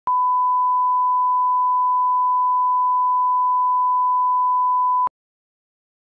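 Broadcast line-up test tone, the standard 1 kHz reference tone that goes with colour bars. One steady, pure, unwavering beep lasts about five seconds and cuts off abruptly.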